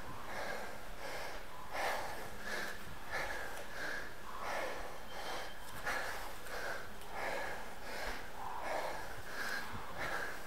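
A stair runner's hard, rhythmic panting at race effort, roughly one and a half breaths a second, evenly kept up while climbing flight after flight.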